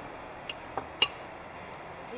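Glass and cutlery clinking on a café table: three light clinks within about half a second, around a second in, the last one the sharpest.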